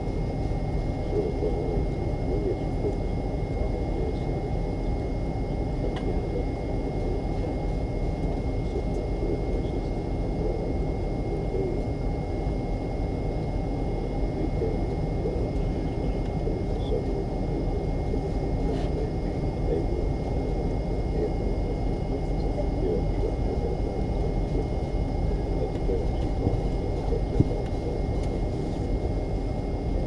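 Cabin noise inside a McDonnell Douglas MD-88 at taxi idle: steady rumble of its rear-mounted Pratt & Whitney JT8D engines, with a thin steady whine above it. One brief knock comes near the end.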